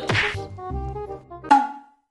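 Comedy sound effect over light background music: one sharp whack about a second and a half in, with a brief ringing tone after it, before the sound cuts off.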